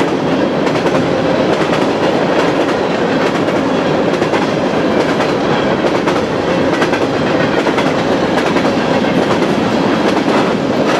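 Covered hopper cars of a freight train passing close by at speed: a loud, steady rumble of steel wheels on rail with many faint clicks running through it.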